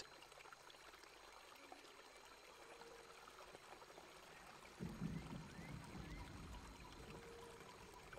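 Near silence: a faint, even background hiss, with a faint low noise coming in about five seconds in.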